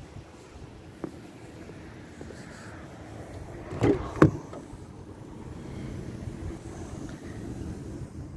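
Minivan sliding side door being opened: a sharp latch clack about four seconds in, then the door rolling back along its track with a steady noise that slowly swells.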